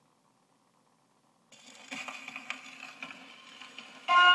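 Surface noise of a shellac 78 rpm record on a gramophone's lead-in groove: near silence, then, about a second and a half in, a faint hiss with crackles and a few louder pops starts abruptly.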